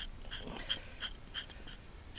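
Hoof pick scraping dirt from the sole of a bare horse hoof: short, faint scraping strokes repeating about three times a second.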